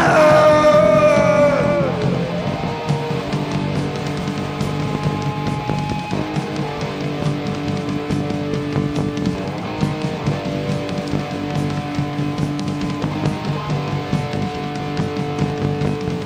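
Live punk rock band playing: electric guitar, bass and drums holding sustained chords, with a high note sliding down over the first two seconds.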